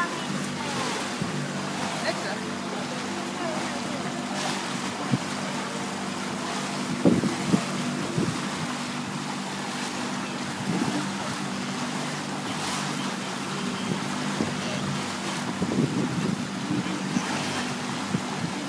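Motorboat engine running steadily under way, with water rushing past the hull and wind on the microphone.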